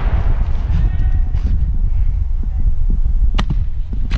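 Steady low rumble on the microphone during woodland airsoft play, with a faint voice about a second in and one sharp crack of an airsoft shot about three and a half seconds in.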